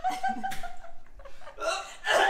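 A woman's held, wordless vocal sound for about a second as she swallows a bite of fish she finds disgusting, then a few short laughs.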